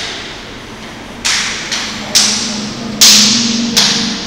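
Electronic sound effects from a projection-mapping installation, played over speakers in a large hall. About five sudden, sharp, noisy hits, each dying away within a fraction of a second, come over a low steady hum.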